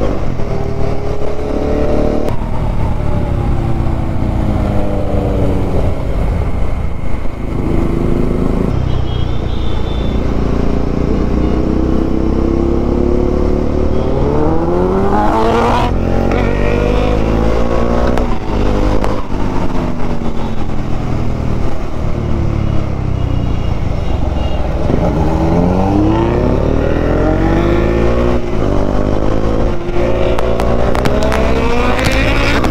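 Bajaj Dominar 400's single-cylinder engine heard from the rider's seat at road speed, its pitch climbing and falling several times as the rider accelerates and shifts, with steep climbs about halfway through and again near the end. A steady low wind rumble on the microphone runs under it.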